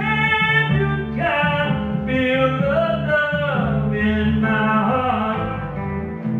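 Live song: a man singing in long, held lines over acoustic guitar, with low bass notes running underneath.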